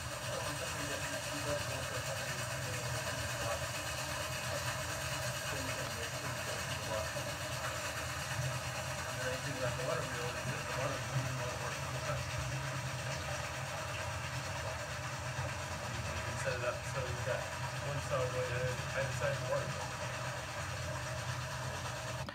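Steady running noise of a reconstructed Roman water-wheel-powered marble saw, its saw frame driven back and forth just above the marble block and not cutting it. Faint voices can be heard in the background now and then.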